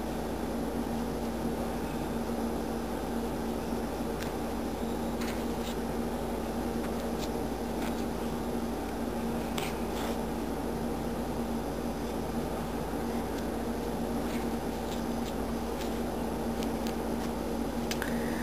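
Steady background hum with a faint, even tone, like a fan or appliance running in a small room, with a few faint, short clicks scattered through it.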